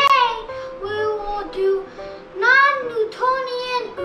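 A child singing over music, with held notes that slide up and down in pitch.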